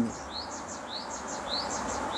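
A small bird chirping: a short rising note repeated about four times, roughly every half second, over a steady background hum.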